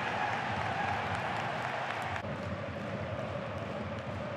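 Steady hubbub of a football stadium crowd, its tone shifting slightly about two seconds in.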